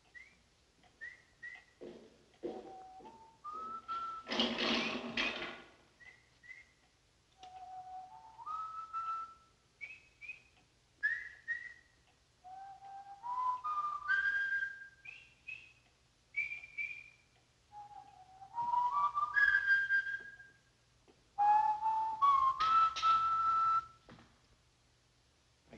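A man whistling a tune in short phrases, the notes stepping upward. About four seconds in there is a brief burst of rushing noise.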